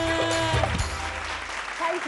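A woman's held sung note over backing music ends about half a second in, the music stops soon after, and a studio audience applauds.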